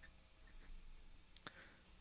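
Near silence: faint scratching of a pen writing on paper, then two sharp clicks about one and a half seconds in.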